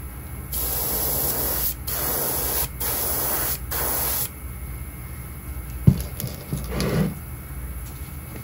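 Airbrush spraying in about four short bursts of roughly a second each, the hiss stopping about halfway through. A sharp knock follows, then light handling noise as a lure holder is moved.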